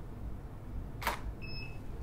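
Nikon D750 DSLR shutter firing once about halfway through, a single sharp click, followed shortly by a brief high electronic beep.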